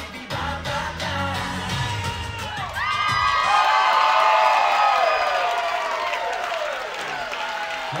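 Upbeat dance music with a steady bass beat stops about three seconds in, and a crowd of guests breaks into cheering, whooping and high-pitched screams, loudest just after the music ends and tapering off.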